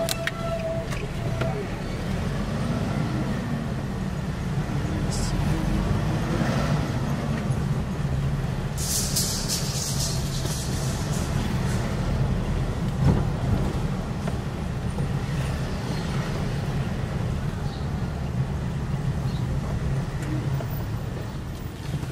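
Steady low engine and road rumble heard inside a moving car's cabin, with a short burst of high crackling about nine seconds in.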